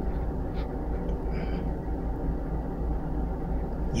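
Steady low background rumble, with a faint short sniff about a second and a half in as the forearm is smelled at close range.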